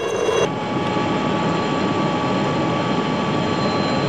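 Helicopter rotor and engine noise, a steady, dense rush with a fast fine flutter and a few steady whining tones. It sets in sharply about half a second in and then holds at an even level.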